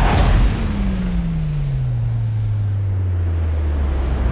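Cinematic trailer sound design: a sudden hit with a rush of noise, then a deep tone that slides down in pitch and settles into a steady low rumble.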